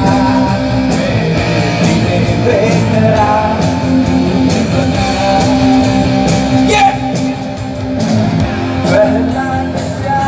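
A live rock band playing loud, with electric guitars, bass and drums, and a male singer singing into a microphone.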